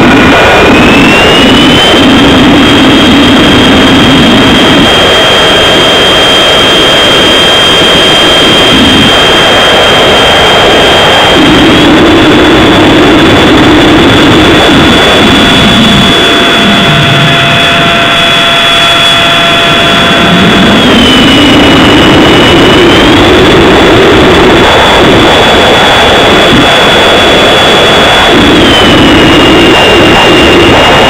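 Radio-controlled model airplane's motor and propeller running loud in flight, picked up by an onboard camera: a steady high whine that rises about a second in, with shifts in pitch as the throttle and airspeed change, and a lower drone that sweeps down and back up in the middle.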